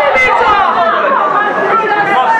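Several people talking at once: overlapping, unclear chatter of a crowd of voices.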